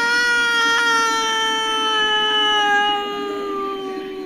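A long, drawn-out wail of dismay: one voice holding a single note that sinks slowly in pitch, crying out "no".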